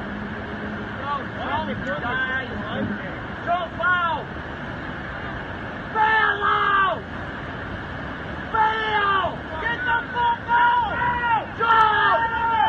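Water pouring over a low-head dam as a steady rush, with people shouting again and again over it, loudest about six seconds in and through the last few seconds.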